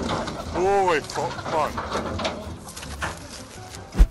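People's voices calling out in a few short exclamations that rise and fall in pitch, over a noisy background. A sharp thump comes right at the end.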